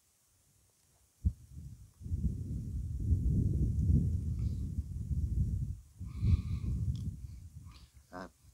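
Low rumbling buffeting on a handheld phone microphone outdoors, with a single sharp knock about a second in; the rumble sets in about two seconds in, breaks off briefly near six seconds, and fades just before speech begins.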